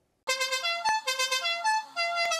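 A custom car horn sound: a short electronic tune played back through a horn-style loudspeaker, a quick run of stepped notes a few to the second, starting about a quarter second in, with two sharp clicks among the notes.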